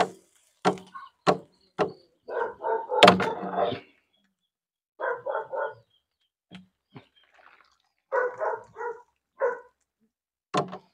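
A dog barking in runs of two to four short barks, with a few sharp knocks in the first two seconds.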